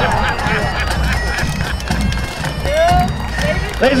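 Bagpipes playing, their steady drones running under the tune; a man laughs just before the end.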